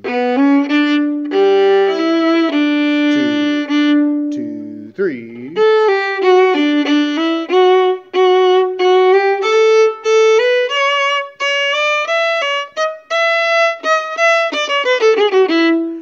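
Violin played solo: a light line of short, detached bowed notes, with a few held multi-note chords about a second in, in the spirit of an early-music dance tune.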